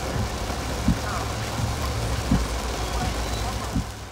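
Heavy rain beating on a moving vehicle's windshield and roof over the steady hum of the engine and road, heard from inside the cab. A windshield wiper thumps at the end of its sweep about every one and a half seconds.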